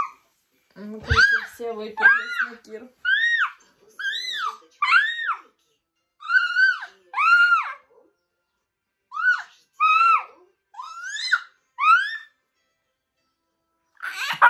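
A girl's voice squealing in a string of short, high-pitched cries, each rising and falling, with brief silences between them.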